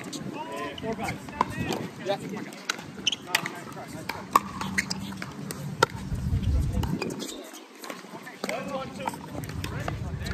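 Pickleball rally: sharp pops of paddles striking the hollow plastic ball, repeated at irregular intervals, with players' voices alongside.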